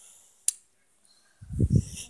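A single sharp click, then a run of low, muffled thumps and rubbing near the end: handling noise as the phone filming is moved about.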